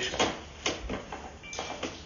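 Sewer inspection camera's push cable being pulled back out of the drain line: a few separate knocks as it comes in, then a short scraping rush near the end.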